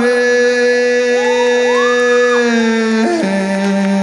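Live band music: a loud held chord that drops to a lower chord about three seconds in, with a man singing a rising and falling line over it in the middle.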